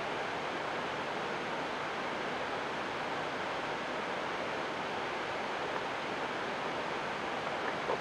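Steady, even hiss with nothing else: the background noise of the studio audio track while the hosts are silent.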